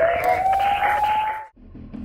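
Television news logo sting: a single rising synthesized tone over a hiss, cutting off sharply about one and a half seconds in.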